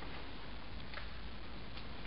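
Steady hiss of room tone and recording noise, with a few faint, irregular clicks about a second in and again near the end.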